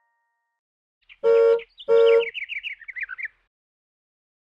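Cartoon sound effects: two short honks of a horn, then a quick run of about ten falling, bird-like chirps.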